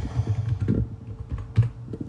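Typing on a computer keyboard: a run of irregular key clicks as a layer name is typed in.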